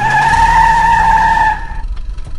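Cartoon car sound effect: a steady, high tyre squeal held for nearly two seconds over a low engine rumble, cutting off suddenly near the end.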